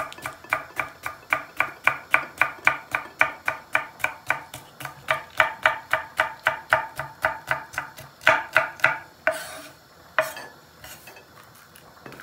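A knife slicing a red kapya pepper into thin strips on an end-grain wooden cutting board, in a steady run of about four chops a second. About eight seconds in, the chopping gives way to a few slower, scraping strokes, then it stops.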